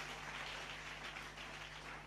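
Faint room noise: a steady hiss with a low electrical hum.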